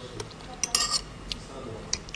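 A metal fork clinking and scraping against a plate while eating: a few light clicks and a short scrape a little under a second in.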